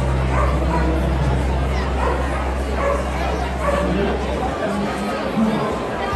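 A dog barking over the chatter of a crowded hall.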